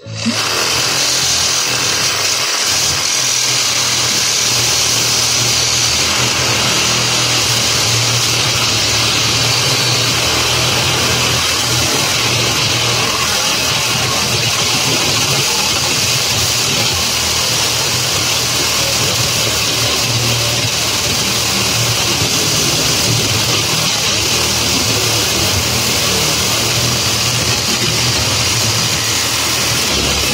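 Cordless reciprocating saw switching on suddenly, then running steadily at speed as its blade cuts through the steel wires of a rolled welded-wire fence.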